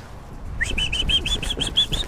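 A songbird singing a quick run of about eight short, similar chirps, starting about half a second in, the first note rising up into the run.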